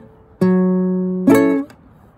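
Acoustic guitar: a single bass note, the F sharp root on the A string, is plucked and rings for about a second, then the full F#min7 barre chord is strummed once and dies away quickly.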